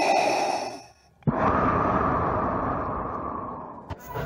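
A long, breathy rush of noise like a heavy exhale, starting suddenly about a second in after a short gap and slowly fading over nearly three seconds. Before it, a steadier sound with a few held tones fades out.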